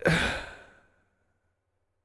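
A man's heavy sigh: one breathy exhale that fades out within about a second.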